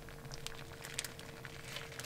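Faint crinkling and small scattered clicks from a plastic pot liner holding thick chili as it is handled, over a faint steady hum.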